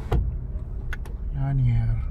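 Low, steady engine and road rumble heard from inside a slow-moving car, with two sharp clicks, the louder one just at the start and another about a second in.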